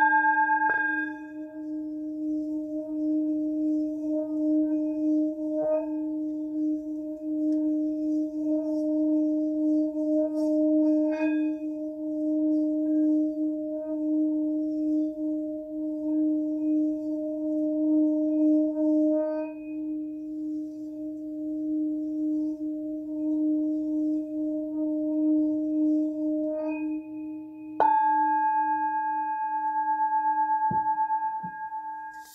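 Large brass Tibetan singing bowl ringing, its low note held in a long, wavering hum for most of the time, with higher overtones fading early on and returning when the bowl is struck sharply again near the end.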